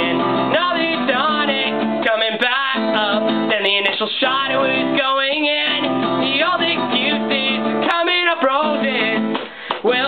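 Acoustic guitar strummed and picked as a song accompaniment, with a man singing over it, and a brief break in the playing near the end.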